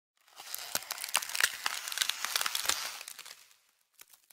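Dense crackling of many quick sharp clicks and rustles, like paper being crumpled, lasting about three seconds and fading out before the end.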